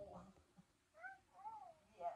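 Two short, faint, high-pitched mewing calls about half a second apart, each rising and then falling in pitch.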